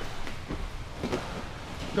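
Soft rustling and a few faint knocks of two people in gi uniforms shifting their bodies on a training mat as they settle into closed guard.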